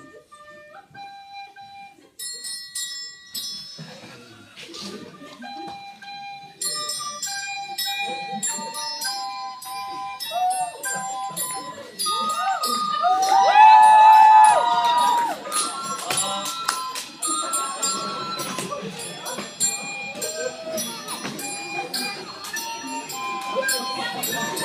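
Small hand-held bells played one ringing note at a time, picking out a slow tune that gets busier as it goes. About halfway through loud voices break in over the bells, the loudest part, and keep going alongside them.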